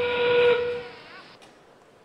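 FIRST Robotics Competition field end-game warning: a recorded steam-train whistle played over the arena sound system as the match clock passes 30 seconds left. One steady whistle tone that ends about half a second in and dies away in the hall's echo.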